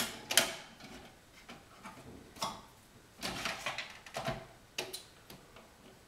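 Plastic clicks and clunks of a single-serve pod coffee maker being loaded and shut, the loudest snap just under half a second in, followed by a few lighter clicks.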